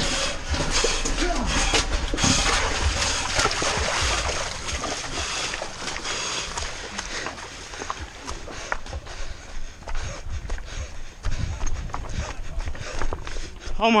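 Footsteps of someone running on a rocky trail, with a rushing noise over the first few seconds.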